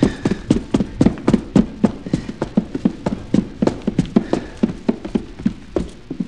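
Rapid footsteps of two men hurrying up a flight of stairs, about four or five steps a second, thinning out near the end.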